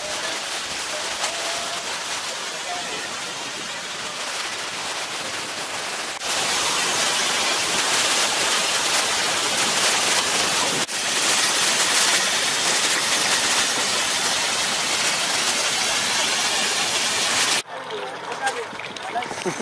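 Waterfall rushing: a steady hiss of falling water, much louder from about six seconds in as the falls are heard up close, cutting off just before the end.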